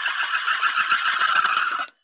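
A grogger, the wooden-ratchet Purim noisemaker, spun hard, making a loud, fast, continuous rattle of clicks that stops just before the end. It is the noise made to drown out Haman's name.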